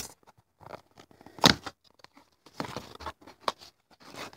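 Small paperboard box being opened by hand: scattered light clicks and rustles of the cardboard flaps, with one sharper click about one and a half seconds in.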